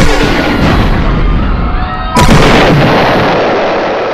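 Two loud explosion sound effects, one right at the start and one about two seconds in, each hitting suddenly and rumbling away over a second or so.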